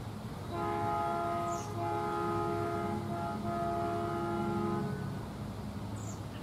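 Miniature railroad train sounding a multi-note chime horn: three blasts of a second or more each, with brief gaps, the last the longest.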